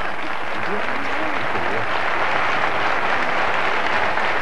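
Studio audience applauding steadily, a dense even clapping that holds at one level, with faint voices showing through about a second in.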